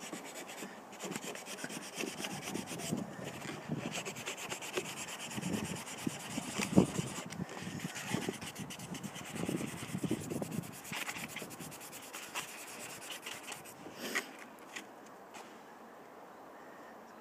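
A Corian handle being rubbed by hand on fine 600-grit wet-or-dry abrasive paper, a steady scratchy rubbing that eases off near the end as the surface is smoothed toward a shine.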